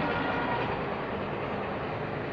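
Steady, even background noise with no distinct knocks or rhythm, fading slightly toward the end.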